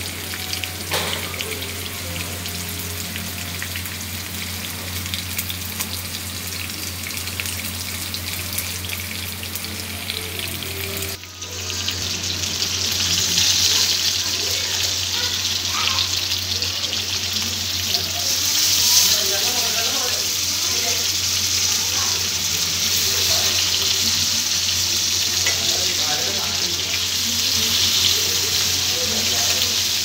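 Masala-coated snakehead fish pieces sizzling in shallow oil in a nonstick pan, over a steady low hum. The sizzle jumps louder and brighter about eleven seconds in.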